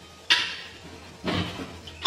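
Two knocks about a second apart as a wooden cutting board is taken out of a kitchen cabinet and handled.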